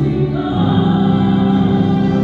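Choir singing a communion hymn in long held chords, moving to a new chord about half a second in.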